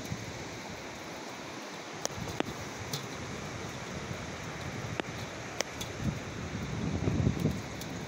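Rail bike rolling along steel rails on a wooden trestle: a steady rolling hiss with a few sharp metallic clicks from the wheels, mixed with wind buffeting the microphone that swells near the end.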